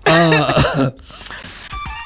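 A man's loud, wavering vocal outburst in the first second. Near the end, a Trace FM station ident begins with steady electronic tones.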